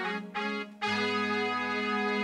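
Yamaha PSR-340 portable electronic keyboard playing two short notes, then a chord held steadily from about a second in.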